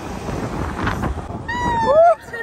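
Wind and road noise on the microphone from riding in an open pickup-truck bed. About one and a half seconds in comes a high-pitched, drawn-out vocal squeal that bends upward in pitch at the end.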